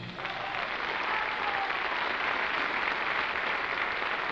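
Audience applauding steadily in a theatre as the band's number ends.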